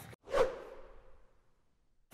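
A single swoosh sound effect about a third of a second in, fading away over about a second, marking the cut to a title graphic.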